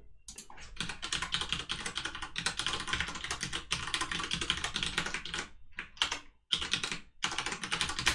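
Typing on a computer keyboard: a long fast run of key clicks, then after a short pause a few brief bursts of keystrokes as a username and password are entered.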